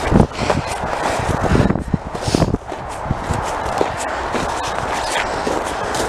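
Footsteps crunching through snow in an irregular walking rhythm, over a steady low rumble.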